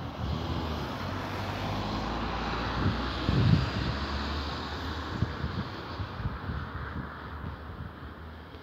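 A vehicle passing by: a steady rushing noise that swells over the first few seconds and fades toward the end, over a low hum, with scattered low thumps.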